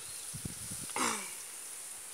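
A single short vocal sound, falling in pitch, about a second in, over a faint steady high hiss.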